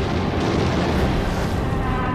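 Steady, dense rumble of battle noise from explosions and artillery fire.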